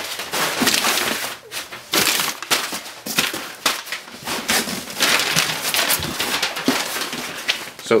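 Crumpled packing paper crinkling and rustling in irregular bursts as it is pulled out of a cardboard shipping box.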